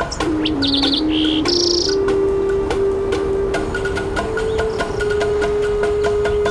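Native American flute playing a slow, low melody: a few short stepping notes, then one long held note with a brief higher note in the middle. High bird chirps sound over it in the first two seconds.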